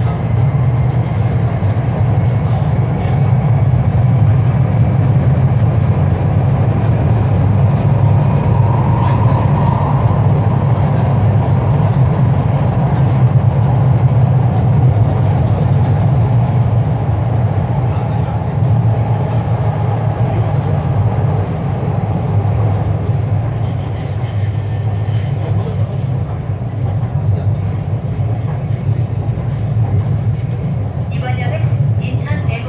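Incheon Line 2 light-metro train running through a tunnel, heard from inside the front car: a steady, loud low rumble of wheels and running gear that eases slightly in the last several seconds.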